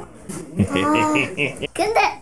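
A person's voice holding one drawn-out note for about a second, then a short cry rising in pitch near the end.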